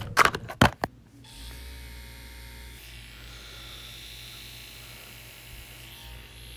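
Packaging rustling with a few clicks, then from about a second in a small battery-powered sonic facial cleansing brush buzzing steadily as it vibrates.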